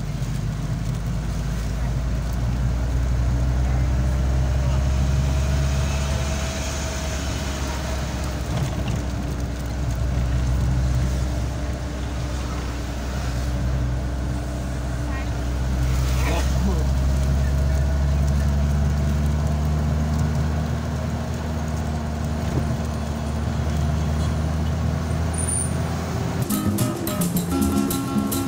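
Vehicle engine and road noise heard from inside the cabin while driving, a steady low hum that swells and eases several times with speed. A brief sharp sound comes about two-thirds of the way through.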